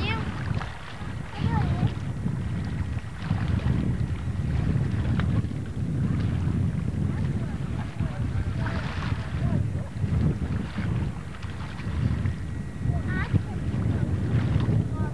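Wind buffeting an outdoor camcorder microphone, a continuous uneven low rumble, with a few brief faint voices now and then.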